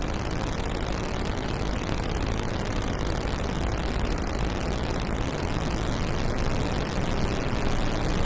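Madwewe handmade Minidrone, a six-oscillator drone synthesizer with its oscillators in low, mid and high pairs, sounding a steady, dense, noisy drone heavy in the low end. It grows slightly louder over the last few seconds as a knob is turned.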